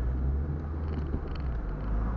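Steady low rumble of a car's engine and road noise heard inside the cabin while driving slowly in city traffic.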